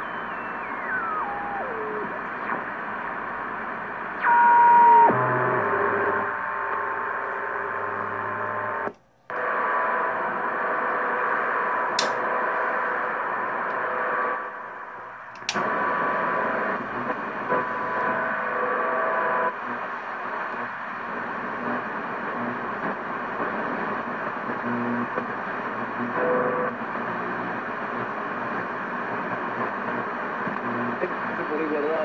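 Hammarlund HQ-100A tube communications receiver being tuned between stations: steady static hiss with whistles, one sliding down in pitch near the start and a loud steady one about four seconds in. The sound briefly cuts out twice, and there are two sharp clicks.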